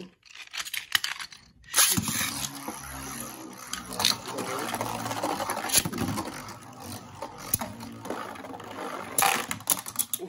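Two Beyblade Burst spinning tops launched into a plastic stadium about two seconds in, then spinning and scraping across the stadium floor with a steady hum. Several sharp clacks as the tops hit each other.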